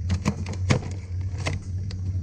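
About five light clicks and knocks of hard plastic and metal as a plunger rod is worked into a Nerf blaster's front end, over a steady low hum.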